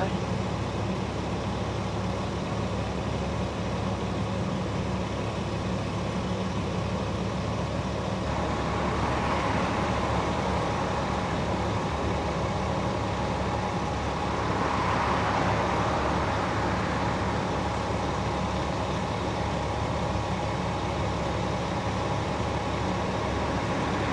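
Steady low hum of a fire engine's diesel idling. A broader rushing noise swells twice, around ten and fifteen seconds in, and again at the very end.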